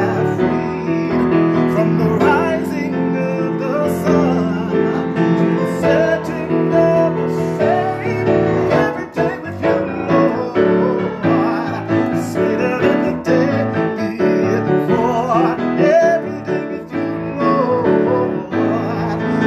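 A man singing a slow worship song while accompanying himself on a grand piano, with full sustained chords under the vocal line.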